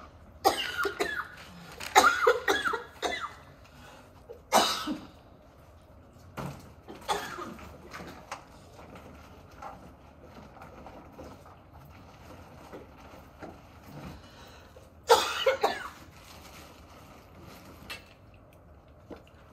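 A woman coughing in several fits: hard bouts in the first three seconds and again about three seconds before the end, with weaker coughs between. She blames the coughing on something irritating her throat.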